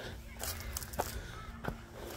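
A few faint footsteps on a concrete walkway, heard as light separate clicks, over a quiet outdoor background with a faint steady hum.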